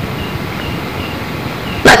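Steady background hiss of a lecture recording during a short pause, with no distinct events, until a man's voice starts again near the end.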